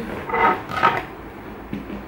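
A large cardboard box being handled and shifted, with rustling scrapes in the first second and a single knock near the end.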